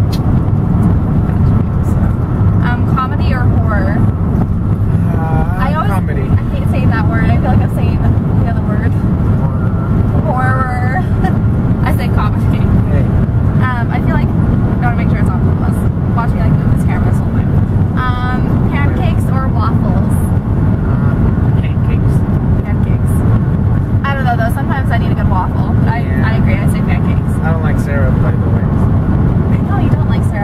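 Steady road and engine rumble inside the cabin of a moving car, with voices talking over it at intervals.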